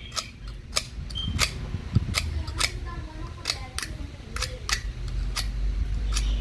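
A utility knife's steel blade scraping along a flat screwdriver's metal shaft to clean residue off it, in about a dozen short, sharp scrapes at an uneven pace.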